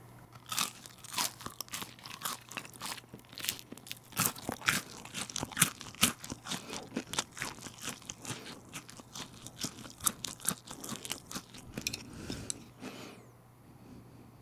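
Crunching and chewing of freshly deep-fried tangsuyuk pork in a crisp starch batter: many sharp, irregular crunches that thin out and quieten about a second before the end.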